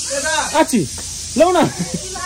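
A person's voice making short wordless vocal sounds, two or three rising-and-falling calls, over a steady high hiss.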